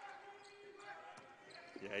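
Faint game sound of a basketball being dribbled on a hardwood court, over a low steady hum.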